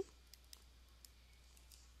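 Near silence with a few faint, sharp clicks of a stylus tip tapping a tablet surface while handwriting is written.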